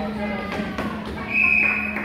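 Indistinct voices of children and spectators in a school gymnasium over a steady low hum, with a brief high-pitched squeal a little past the middle.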